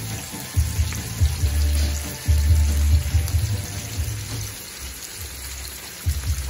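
Two beef steaks frying in butter with garlic cloves in a pan: a steady sizzle of hot, bubbling butter. A low rumble comes and goes through the middle.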